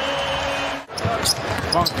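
Basketball arena game sound. The arena hum cuts out abruptly just under a second in, then a basketball is dribbled on the hardwood court with a few short sneaker squeaks over crowd noise.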